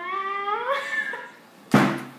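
A long, high-pitched, meow-like vocal whine that rises in pitch and fades out, followed about a second later by a sudden loud thump.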